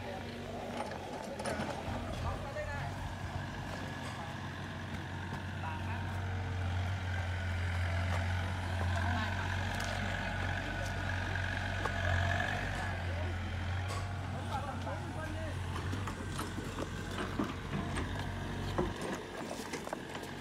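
Excavator's diesel engine running steadily, swelling louder in the middle and easing off near the end, with a higher whine over it for a few seconds in the middle.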